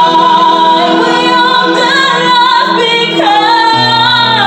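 Two women singing a slow ballad duet in harmony, accompanied by an electronic keyboard. A long held note gives way to a new phrase, with a low keyboard note coming in near the end.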